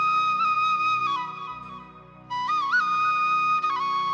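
Bansuri (bamboo side-blown flute) playing a slow melody. A long held note slides down and fades not quite two seconds in. After a brief gap, a new phrase opens with a quick upward ornament and another held note that glides down near the end. A soft low accompaniment runs underneath.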